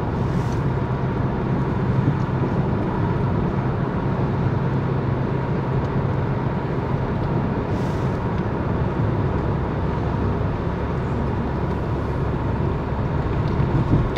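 Interior noise of a car being driven: a steady low rumble of engine and road noise heard from inside the cabin.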